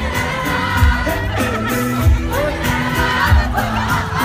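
A live pop-folk band playing with lead singing, mixed with a crowd's voices, heard from among the audience. A low drum beat lands about every second and a quarter.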